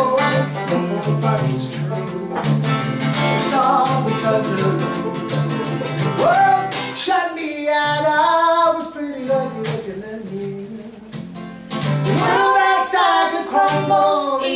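Live acoustic song: steel-string acoustic guitar strummed and banjo picked, with male and female voices singing. The strumming thins out and the music gets quieter for a few seconds in the middle, then the full band comes back in about twelve seconds in.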